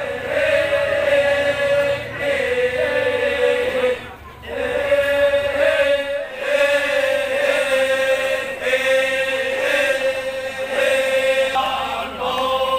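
Group of voices chanting in unison on a long, held, droning note, with a brief break about four seconds in.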